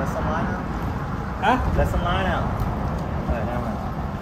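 People's voices talking in short bursts over a steady low background rumble.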